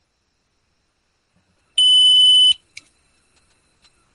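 A single high-pitched electronic beep lasting just under a second, about two seconds in, followed by a short click.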